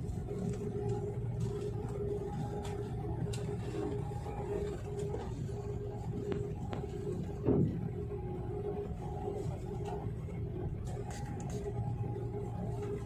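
Airliner cabin noise while taxiing: a steady low rumble with a constant hum, and a short louder thump about seven and a half seconds in.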